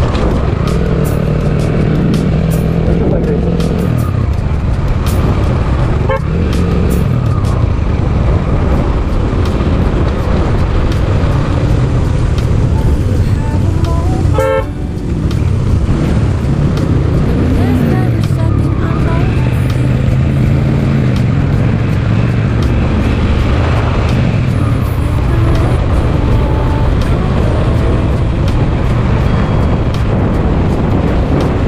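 Suzuki Gixxer SF's single-cylinder engine running on the move, its pitch rising and falling with the throttle, over steady road and wind noise. A short horn toot sounds about halfway through.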